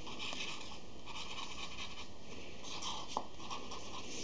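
Marker pen scratching on thin card in short strokes with brief pauses, drawing small circles. A small tap about three seconds in.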